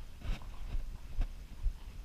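Horse's hoofbeats on sand arena footing, a regular dull thump about twice a second with a couple of sharper knocks.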